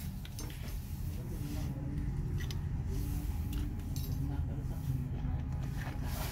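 Light clicks and rattles of speaker wires and a wire clip being handled and attached to a loudspeaker driver's terminals, over a low steady rumble.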